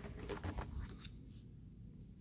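Plastic binder sleeve page being turned: a short crinkling rustle with a few clicks, over in about a second.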